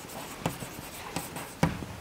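Chalk writing on a chalkboard: a run of short taps and scratches as the strokes are drawn, with the sharpest knock about a second and a half in.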